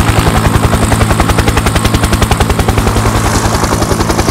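Helicopter rotor chopping with a rapid, even beat over a steady low engine drone.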